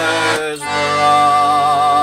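Button accordion holding a chord while a man sings over it. About half a second in, the chord changes and he settles into one long held note with an even vibrato, the closing note of the song.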